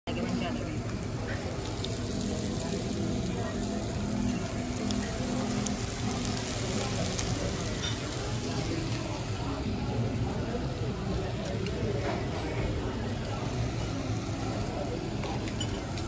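Meat sizzling on a tabletop Korean barbecue grill, a steady hiss under a murmur of indistinct voices.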